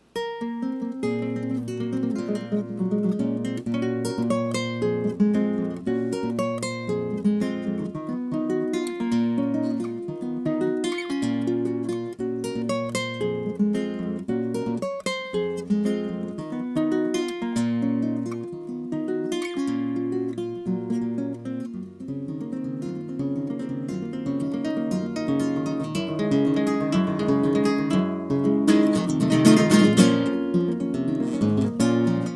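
Solo nylon-string classical guitar, fingerpicked, playing an instrumental introduction with bass notes under the melody. It begins suddenly and grows a little louder near the end.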